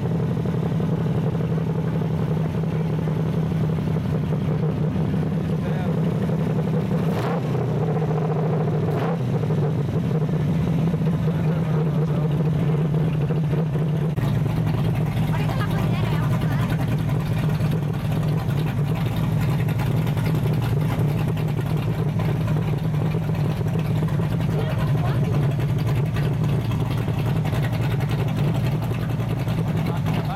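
Chevrolet V8 idling steadily, with a deeper rumble joining about halfway through.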